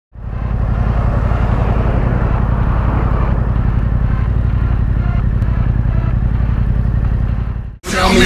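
Yamaha MT-07 parallel-twin engine idling steadily through an Akrapovic 2-in-1 carbon exhaust, with no revving, then cutting off suddenly near the end.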